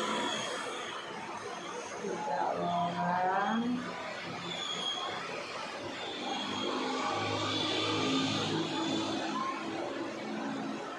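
Indistinct voices in the background, rising and falling in pitch, clearest about two to three seconds in.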